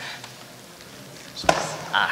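A single sharp knock about one and a half seconds in, as a ballot envelope drops into a wood-framed glass ballot box, over faint murmuring voices.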